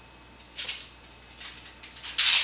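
Beads of a toy frame abacus sliding and clacking along their rods as it is handled, in several short rattles: one about half a second in and a cluster near the end.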